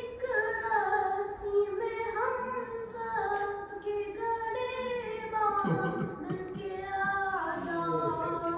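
A boy singing an Urdu noha, a mourning lament, solo into a microphone, drawing out long held notes with short breaks between phrases.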